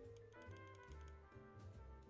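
Faint background music with held notes over a pulsing bass, with a few light computer-keyboard clicks.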